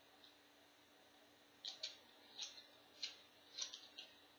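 Light clicks and rattles of paintbrush handles knocking against each other as a hand rummages through a zippered brush case, in five or so short bursts over the second half.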